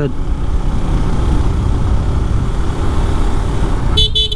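Motorcycle cruising at a steady speed, its engine running evenly under a heavy, continuous wind rumble on a helmet-mounted action camera's microphone.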